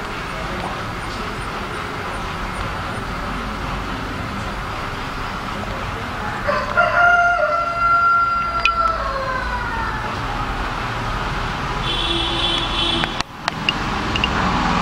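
A single long animal call, held level and then falling in pitch, starts about six and a half seconds in and lasts about three seconds, over steady background noise.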